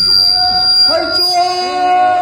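Voices of a group of singers starting a slow chant, sliding up into long held notes about a second in, with a thin high steady tone over them that fades out before the end.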